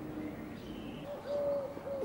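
Faint bird calls in outdoor quiet, with one low, steady call in the second half.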